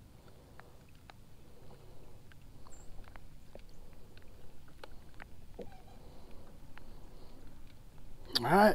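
Faint scattered clicks and light taps over a low, steady rumble.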